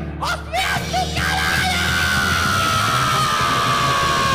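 Heavy metal song played by a band of drums, distorted guitar and bass, with a long held yelled vocal note that starts about a second in and slowly falls in pitch.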